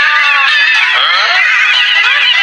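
Several high-pitched, squeaky cartoon voices chattering over one another in quick rising and falling glides.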